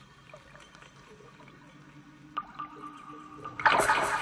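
Quiet underwater film soundtrack with faint bubbling and steady tones, then about three and a half seconds in a sudden loud surge of rushing, churning water as the shark strikes.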